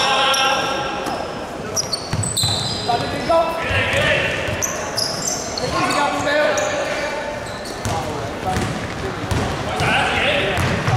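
Indoor basketball game in a large, echoing hall: the ball bouncing on the hardwood court, many short high squeaks of sneakers on the floor, and players' indistinct calls and shouts.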